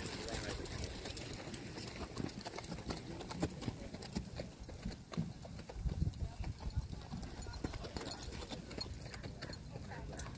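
Horse hoofbeats on the arena's dirt footing as a horse moves past close by, with a few louder low thumps about six seconds in.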